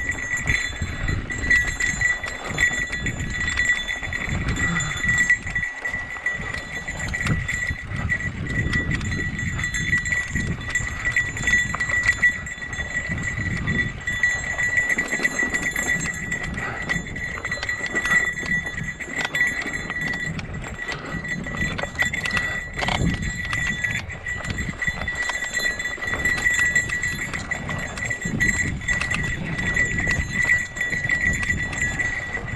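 Mountain bike rolling over a rocky dirt trail: tyre rumble with irregular knocks and rattles as the bike bounces over rocks and ruts. A steady high ringing, like a small bell, runs over it throughout.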